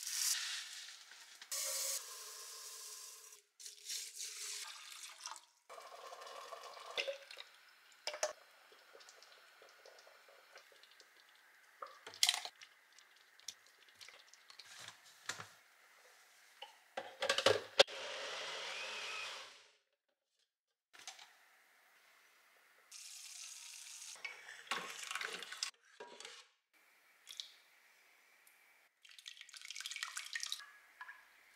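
A string of kitchen cooking sounds: dry tapioca sago pearls poured from a plastic bag into a bowl at the start, then scattered clatters and handling noises. About eighteen seconds in, a Nutribullet personal blender runs for about two seconds. Near the end, cooked sago and water are poured from a pot into a mesh strainer in the sink.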